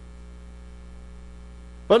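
Steady electrical mains hum, a low even buzz with evenly spaced overtones, carried on the sound and recording system. A man's voice starts right at the end.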